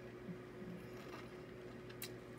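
Quiet room tone with a steady low electrical hum and a few faint soft sounds.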